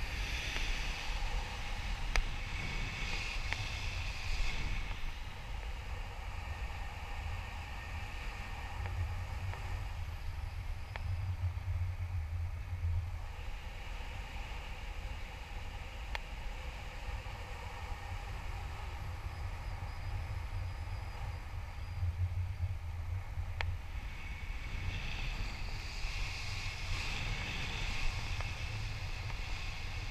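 Wind rushing over an action camera's microphone in flight under a tandem paraglider: a steady low rumble that grows stronger twice for a few seconds.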